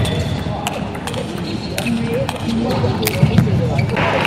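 Table tennis rally: a celluloid ball ticking off bats and the table several times at irregular spacing, over the steady murmur of an arena crowd.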